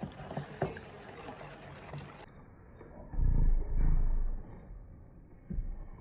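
A spoon scraping and stirring casting powder and water in a plastic mixing bowl, with small clicks and scrapes. About halfway through comes a loud, low rumbling for a second or two, and a shorter low thump follows near the end.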